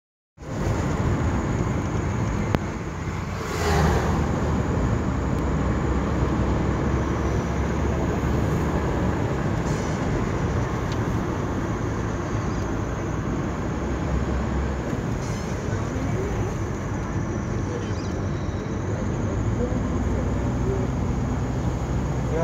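Steady road and engine noise inside a moving Toyota car's cabin, a low rumble of engine and tyres with air rushing past, and a brief louder rush about four seconds in.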